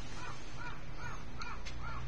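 Electronic alarm of a gas fire-suppression system sounding a repeating rise-and-fall chirp, about two and a half times a second, while the control panel shows both fire-detection circuits tripped in automatic mode, as in a test of the system's alarm. A steady low hum runs underneath.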